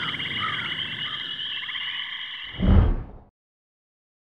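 Night-time animal chorus: a steady, high, rapidly pulsing trill with a few short lower chirps. About two and a half seconds in comes a brief low thump, and then the sound cuts off suddenly.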